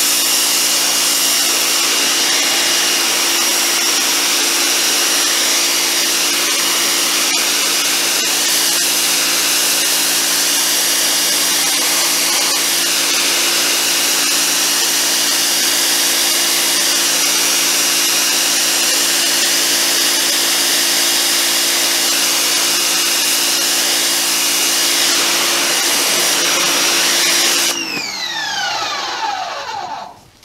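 1800-watt, 2300 psi electric pressure washer running steadily, its motor and pump humming with a high whine under the hiss of a 15-degree fan of water spraying onto a mossy wooden deck. About two seconds before the end the trigger is released: the spray stops and the motor winds down with a falling whine.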